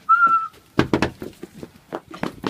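A person whistles one short, steady note, then a quick, irregular run of knocks and thumps follows.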